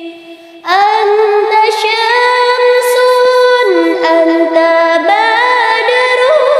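A woman singing a sholawat, an Islamic devotional song, in long held notes with slight waver. After a brief break near the start, a new note comes in; the melody steps down about halfway through and rises again near the end.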